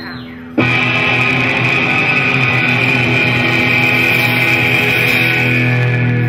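Live instrumental surf rock with electric guitar. After a brief quieter lull at the start, the full band comes back in suddenly about half a second in and plays on loud and steady.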